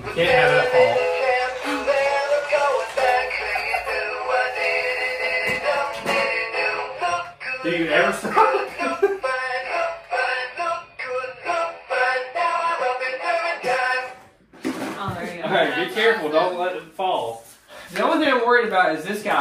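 Battery-powered animatronic singing fish plaque playing its song in a synthetic male singing voice, with a short break about fourteen seconds in before the singing picks up again.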